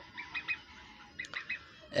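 Faint bird chirps: two quick runs of three short, high calls, one near the start and one just past the middle.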